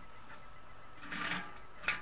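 Handling noise from a tin coin bank being moved about: a brief rustle about a second in, then a single sharp click near the end.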